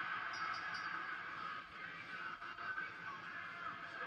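Faint, steady audio from a televised wrestling broadcast playing in the room, heard as a low wash of sound with no clear voice.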